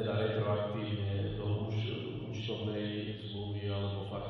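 A person's voice speaking at length in an even, droning tone, over a steady low electrical hum.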